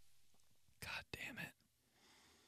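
Near silence, broken about a second in by a brief faint whisper from a man, half a second long.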